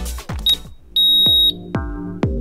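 Interval timer beeping the end of a work set: a short high beep, then one long beep about a second in. Underneath is electronic dance music with a steady kick drum, which thins out just before the long beep and comes back in after it.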